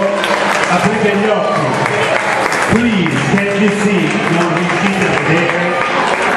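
Applause from a small audience mixed with men's voices talking, as a song ends.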